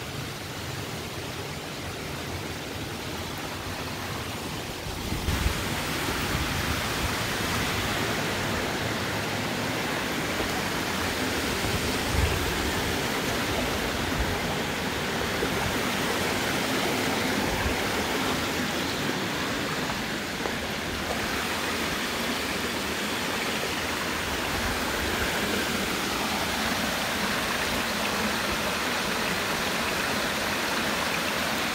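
Shallow creek water running over rocks, a steady rushing hiss that grows louder about five seconds in, with a few low thumps.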